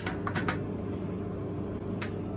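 Steady machine hum, like a room's ventilation or air-conditioning fan. A few light clicks in the first half second as 35mm film canisters are picked up and set down on a worktop.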